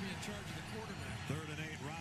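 A televised football broadcast playing quietly: a commentator talking over a faint, even background of stadium noise.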